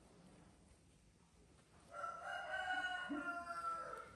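One long, pitched animal call starting about two seconds in, held nearly level for about two seconds and dropping slightly at the end.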